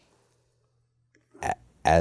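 A pause in a man's speech: near silence with a faint low room hum, then a short hesitation sound and his speech resuming near the end.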